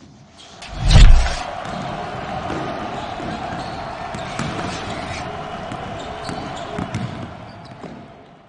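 Outro sound effect: a deep boom about a second in, then a sustained hall-like bed with scattered basketball bounces, fading out near the end.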